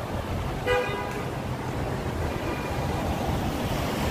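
Steady city street traffic rumble as cars drive past, with a single short car-horn toot about a second in.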